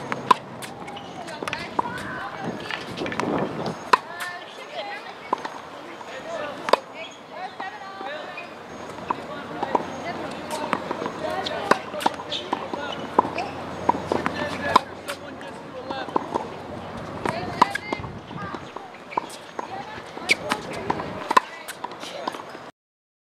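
Tennis ball struck by a racket in a rally on a hard court: a sharp pop every few seconds, with smaller clicks in between. Voices chatter throughout.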